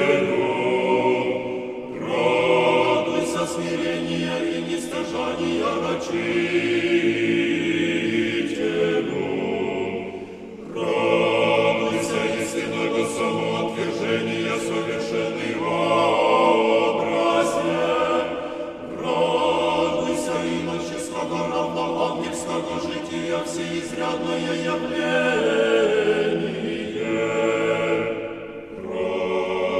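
Unaccompanied choir singing an Orthodox akathist hymn in Church Slavonic, in long sustained phrases with short breaks between them every several seconds.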